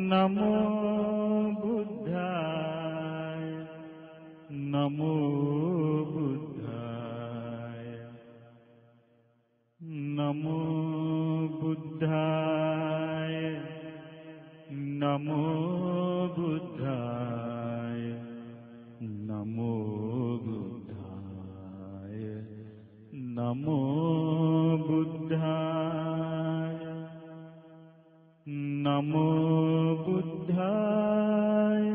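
Buddhist devotional chanting: one pitched voice in long melodic phrases, holding and sliding between notes. It breaks off briefly about ten seconds in and again shortly before the end.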